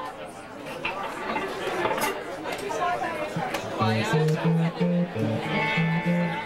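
Crowd chatter in a small bar, then a little past halfway a band starts playing, with a run of low, evenly spaced guitar notes.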